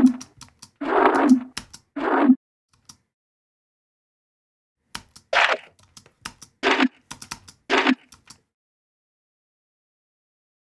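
Short bursts of a resampled electronic bass sample, pitched down an octave, played back in Ableton Live: three about a second apart, a pause of about two and a half seconds, then three more. Mouse clicks sound between them.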